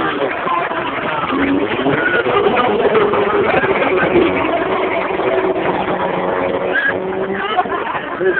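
A stunt car's engine running, its pitch rising and falling as the car drives across the track. Voices of a crowd are mixed in.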